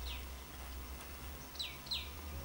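A bird chirping in short downward-sliding chirps: one just after the start and two in quick succession near the end.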